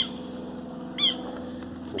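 A bird calling outdoors: two short, high chirps that sweep downward in pitch, about a second apart, over a steady low hum.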